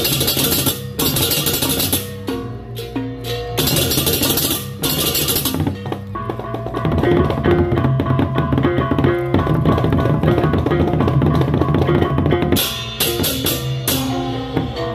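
A Balinese baleganjur gamelan playing: pairs of cengceng kopyak hand cymbals crash together in loud blocks during the first five seconds and again near the end. Between them, drums and pitched gongs keep up a dense, driving pattern.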